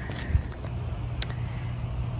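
Low steady rumble of outdoor background noise, with a soft thump just after the start and a faint click about a second in.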